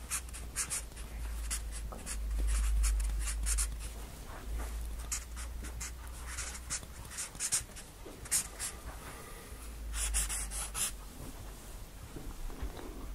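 Someone writing or drawing a diagram by hand: a run of short, irregular strokes, with a low rumble underneath.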